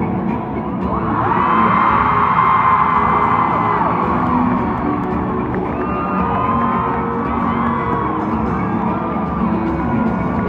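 Arena crowd cheering and screaming over music from the PA, swelling about a second in, with many high voices shrieking at once.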